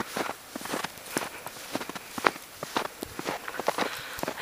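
Footsteps in fresh snow: a quick, uneven series of steps.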